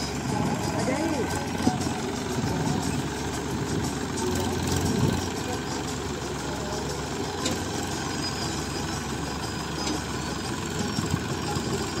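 Massey Ferguson 7250 DI tractor's diesel engine running steadily at low speed, powering a tractor-mounted Satnam 650 mini combine harvester, with faint voices now and then.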